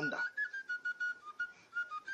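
Background music: a thin, whistle-like melody holding and stepping between a few high notes. The tail of a man's speech comes at the very start.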